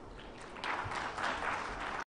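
Audience applauding, the clapping starting about half a second in and filling out.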